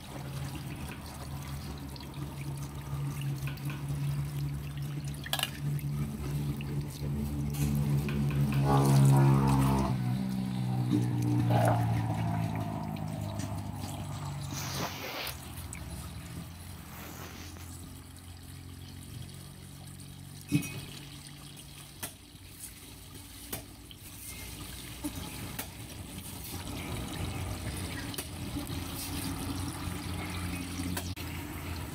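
Water pouring steadily from a hose onto a plastic cutting board while catfish are cleaned and cut, with a few sharp knocks of a knife on the board in the second half. A low, steady-pitched hum swells and fades in the first half.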